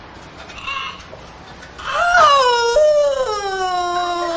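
A young woman's long, drawn-out wailing cry, starting about two seconds in and sliding slowly down in pitch, with one break partway through.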